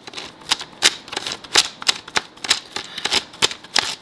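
Brushes of a Roomba 675 cleaning head turned by hand, its gearbox giving a run of sharp clicks, about three a second. The clicking comes from the tiny plastic gears in the gearbox, which are stripped; a healthy head turns almost silently.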